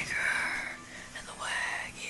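A person whispering in two drawn-out, breathy sounds, each under a second long and rising at its start before holding steady.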